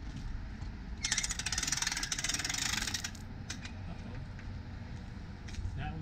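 Manual RV awning being tugged out by its pull strap with an awning hook: a rapid clicking rattle from the awning's roller mechanism starts about a second in and lasts about two seconds, followed by a few single clicks. The awning is not rolling out because it is hung up at a latch.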